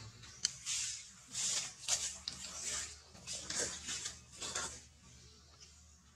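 Close-up sucking and smacking noises from a nursing baby macaque, a string of short noisy bursts and sharp clicks.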